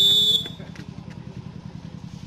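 A referee's whistle gives one short, loud blast at a single steady pitch, ending about half a second in, the signal to serve in a volleyball match. A steady low hum continues underneath.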